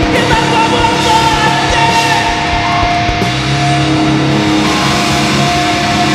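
Heavy rock band playing live at full volume: distorted guitars and bass held over steady drums, with a few bending, sliding notes.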